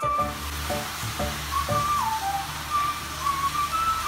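Background music with a slow, high melody line, over a steady rush of hot-spring water pouring from a spout into the bath. The water noise starts right at the beginning.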